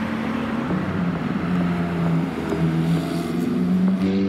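A Ferrari F430's V8 engine running as the car drives along the street, its note shifting slightly in pitch.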